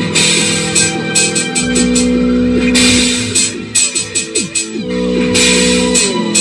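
Live electronic music from synthesizers and a loop station: held low synth tones with pitches that slide up and down, over repeated bursts of high hiss.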